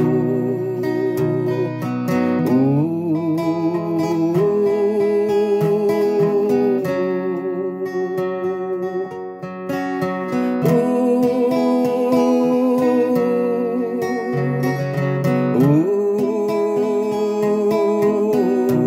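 A man singing long, held notes with a wavering vibrato, accompanied by a steadily strummed steel-string acoustic guitar.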